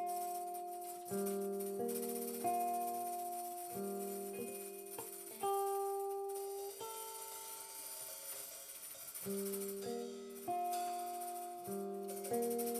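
Clean electric guitar playing slow, ringing chords: a new chord is struck every second or so and left to die away. Light, high jingling percussion sits over it.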